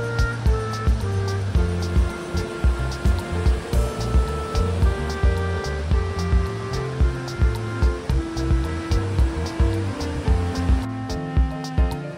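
Background music with a steady beat, about two beats a second, under held melodic notes.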